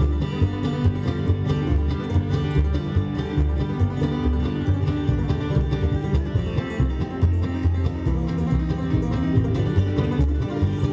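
Live bluegrass band playing an instrumental passage: plucked upright bass keeping a steady pulse under banjo and mandolin picking, with guitar.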